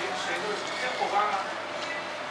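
Faint, indistinct voices over the steady background hubbub of a restaurant dining room.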